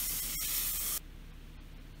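Butter sizzling hard in an overheated frying pan, a strong hiss with steam and smoke coming off. The hiss cuts off abruptly about a second in, leaving only a faint low hum.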